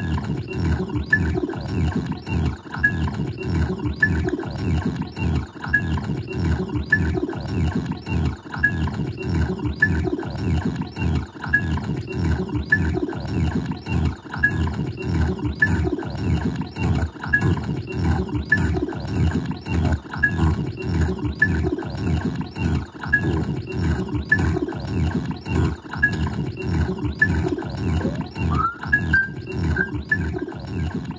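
No-input feedback-loop noise from a guitar effects pedal chain (Hotone tremolo, Boss SL-2 Slicer, Alexander Syntax Error): a loud growling drone chopped into a fast, even pulse, with a short high blip repeating about once a second. Near the end a tone sweeps upward in pitch.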